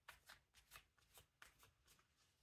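Very faint, quick soft clicks, about four a second, from a deck of tarot cards being shuffled.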